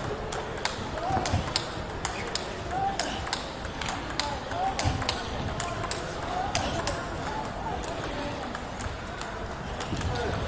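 Table tennis practice rally: celluloid-type plastic ball clicking off rubber-faced bats and bouncing on the table in quick, irregular clicks, several a second, with balls from neighbouring tables in the hall.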